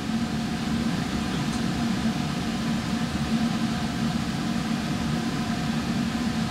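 Steady ventilation hum of a laboratory fume hood's exhaust fan, an even rushing noise with a constant low tone and fainter higher tones.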